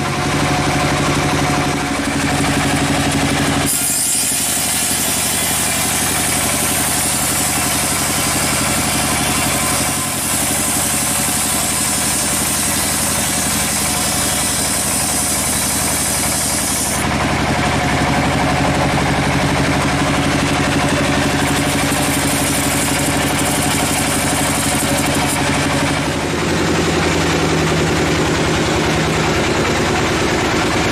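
Band sawmill's engine running steadily, with a loud high hiss of the blade sawing through the teak log from about four seconds in until about seventeen seconds in.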